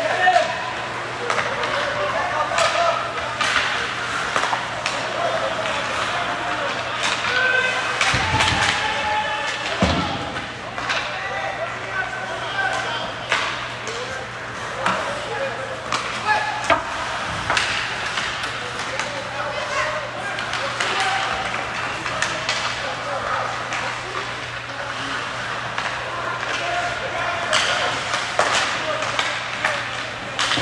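Ice hockey rink during live play: indistinct shouts and calls from players and spectators, with frequent sharp clacks of sticks on the puck and ice and a couple of heavier thuds against the boards, over a steady low hum.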